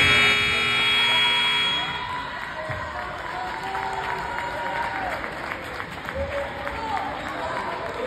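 Gymnasium scoreboard buzzer sounding one loud, steady blast of about two seconds as the game clock runs out to zero.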